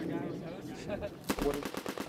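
Belt-fed machine gun firing a rapid burst of shots that starts about a second and a quarter in and runs on to the end.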